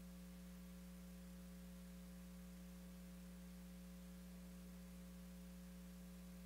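Near silence with a steady low electrical mains hum and faint hiss, unchanged throughout.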